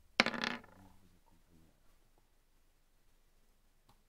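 Dice rolled onto a table: a brief clattering rattle of small hard objects, starting a moment in and lasting about half a second.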